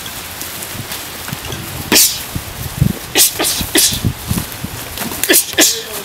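Bare-knuckle fighters exhaling sharply as they throw punches: short hissing bursts, one about two seconds in and then two quick clusters. A steady outdoor hiss runs underneath.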